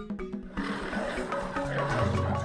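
A lion's roar comes in about half a second in as a rough, noisy rumble and carries on to the end. It is laid over upbeat marimba-style background music.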